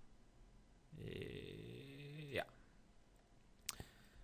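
A man's drawn-out hesitation sound, a long 'uhh', starting about a second in and dropping in pitch at its end, followed near the end by a couple of sharp clicks, from the computer mouse.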